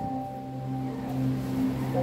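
Soft background church music: one low chord held steadily on a keyboard.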